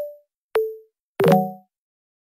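Three short edited pop sound effects, each a sharp click followed by a quickly fading tone, with dead silence between them. They come at the start (higher tone), about half a second in (lower) and a little after a second (fuller and deeper), timed to quick outfit-change cuts.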